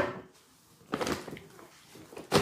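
A brief rustle and knock about a second in from a large woven plastic shopping bag being reached into and handled.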